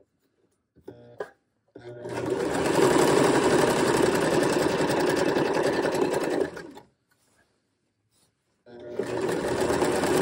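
Electric sewing machine stitching at a steady speed, starting about two seconds in, stopping at about seven seconds, and starting again near the end.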